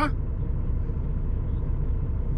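Truck's diesel engine idling: a steady low rumble.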